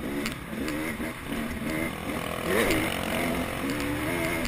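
Motocross bike engine revving up and down repeatedly with the throttle while riding, picked up close by a camera on the bike, with the loudest surge of revs about halfway through.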